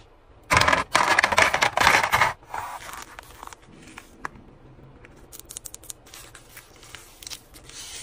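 Ice cubes and plastic ice trays being handled: about two seconds of loud, dense crackling and clattering of ice, then lighter scattered clicks and scrapes of tongs and tray.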